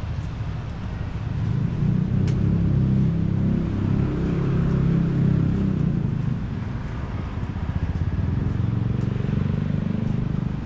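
Low rumble of city traffic that swells about a second and a half in, eases off around six seconds and rises again near the end.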